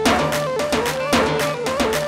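Kurdish line-dance music from a live wedding band: an electronic keyboard plays a quick, ornamented lead melody over a steady, driving drum beat.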